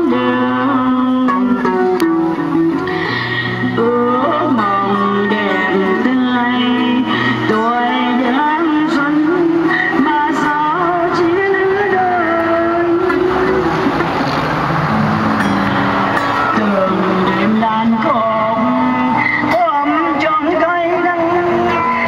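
A woman singing into a microphone played through a small portable amplifier, with an acoustic guitar accompanying her.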